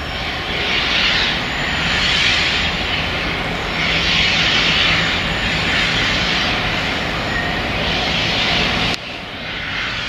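Freightliner Class 66 diesel locomotive's two-stroke V12 engine running hard under power as it hauls a freight train past, a loud steady sound with a hiss that swells and fades several times. The sound drops suddenly about nine seconds in, then carries on quieter.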